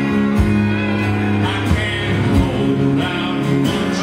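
A live country band playing a slow song, with fiddle, acoustic and electric guitars, keyboard and drums.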